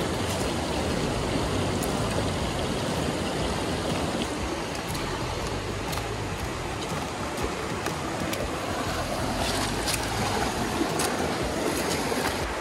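Small rocky stream rushing and splashing over boulders, a steady noise, with a few faint clicks near the end.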